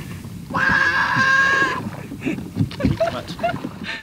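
A toddler's long, high yell held at a steady pitch for over a second, followed by a few short, softer calls, typical of a small child calling out to ducks.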